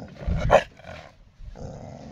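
A dog barks once, short and loud, about half a second in.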